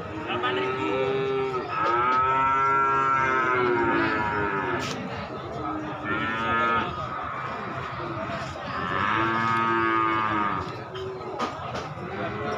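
Cattle mooing, about four long calls one after another, each rising and then falling in pitch; the second is the longest and loudest.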